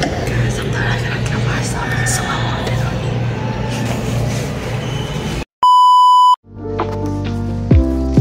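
Muffled handheld-phone room noise with an indistinct voice for about five seconds. Then the sound cuts out and a loud, steady censor bleep sounds for under a second. Light background music with plucked notes and falling bass notes follows.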